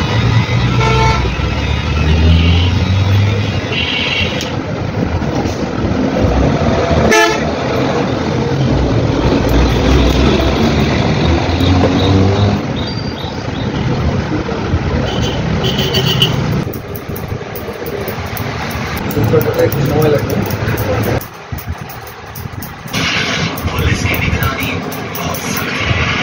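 Road traffic with vehicle horns tooting, mixed with people's voices in the background.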